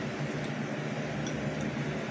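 Steady room noise from a running fan: an even hiss over a low, constant hum, with nothing starting or stopping.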